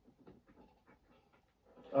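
A quiet stretch with only faint, scattered short sounds, then a man's voice starts speaking near the end.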